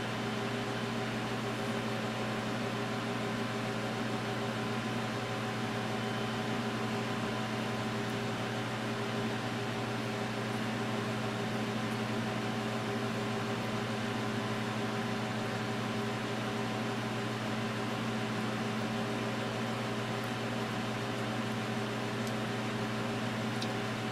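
A room heater running: a steady, unchanging hum over an even hiss.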